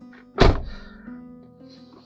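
A car door shutting: one heavy thud about half a second in, over soft background music.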